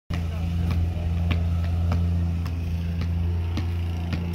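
A basketball dribbled on an asphalt driveway: six sharp bounces about 0.6 s apart, over a steady low hum.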